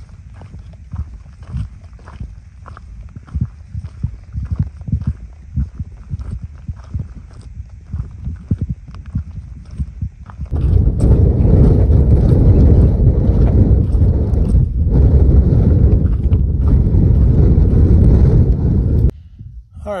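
Footsteps crunching on a rocky dirt trail at walking pace. About ten seconds in, loud wind buffeting the microphone takes over as a steady low rumble and cuts off suddenly near the end.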